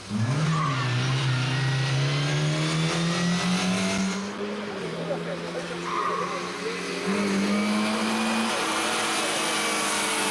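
A classic Lada 2101 rally car's four-cylinder engine revs hard under acceleration. Its pitch climbs, then drops back with each gear change, several times over.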